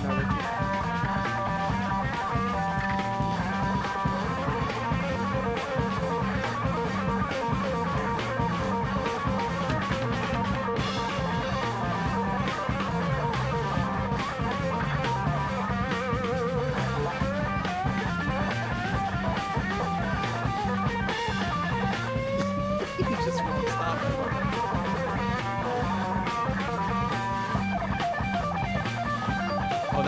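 Live rock band recording: an electric guitar solo, played on a Gibson ES-335, with bent notes over a steady, repeating bass and drum groove.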